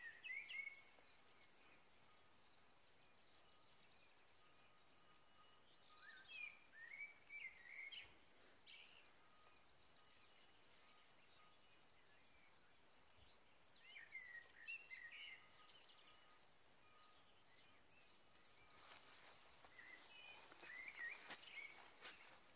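Faint, evenly pulsed insect chirping in a meadow, about two to three high chirps a second, keeping a steady rhythm. Four times, a bird sings a short warbling phrase over it.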